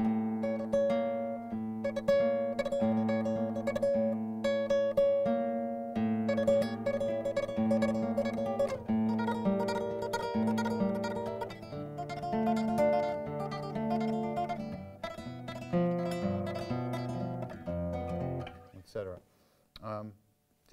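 Nylon-string flamenco guitar played in tremolo: a thumb-plucked bass note, then rapid repeated fingered notes on a treble string, over and over as the melody moves. The playing dies away about a second before the end.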